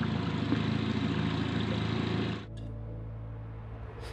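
Small outboard motor on a dinghy running steadily at low speed, with water and wind noise. About two and a half seconds in, it cuts off abruptly to a quieter passage with a few soft sustained tones as music begins.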